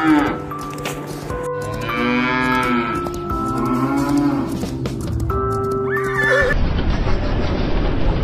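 Music with animal calls layered over it. About six and a half seconds in, it switches abruptly to a dense, steady noise.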